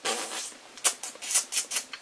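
Plastic housing of a Primos trail camera being handled: a quick series of short clicks and rattles of hard plastic.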